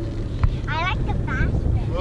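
Motorboat underway: a steady low rumble of the engine, with wind buffeting the microphone. A single brief knock comes about half a second in, and a short high-pitched voice follows about a second in.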